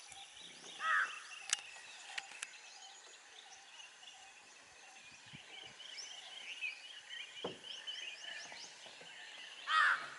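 Forest ambience with many small birds chirping, busiest in the second half. A loud, short call rings out about a second in and again near the end, and a few sharp clicks come early on.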